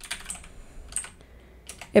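Typing on a computer keyboard: several scattered keystrokes as a word in the code is deleted and retyped.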